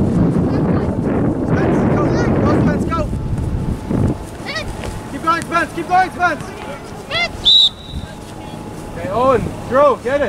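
Wind buffeting the microphone for the first four seconds. Then comes a run of short, high, rising-and-falling calls, with a brief high whistle-like tone about seven and a half seconds in.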